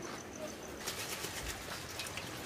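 Light rain pattering on an umbrella overhead, in quick irregular drops that begin about a second in.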